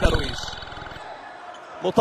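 A basketball bouncing on a hardwood court right at the start, followed by quieter arena background noise that fades over about a second.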